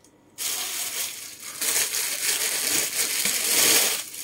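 Packaging crinkling and rustling loudly as it is handled, starting about half a second in.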